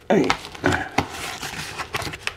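Paper wrapping crinkling and tearing as it is pulled off a parcel by hand, with several sharp crackles.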